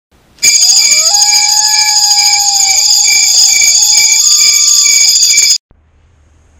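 Loud, alarm-like intro sound effect: several steady shrill high tones, one of them pulsing about twice a second, with a few lower sliding tones. It starts about half a second in and cuts off suddenly near the end.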